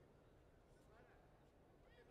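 Near silence: faint arena room tone, with a couple of brief distant calls from voices in the hall, about a second in and near the end.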